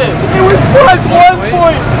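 Young men's voices talking and exclaiming excitedly over one another, over a steady low hum.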